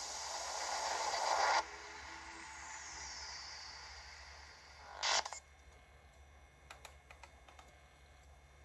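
Burst of hiss-like noise from a portable DVD player's speaker, swelling for about a second and a half and then cutting off suddenly as the disc moves from the warning screen to the studio logo. A faint falling whistle follows, then a second short burst of noise about five seconds in and a few faint clicks near the end.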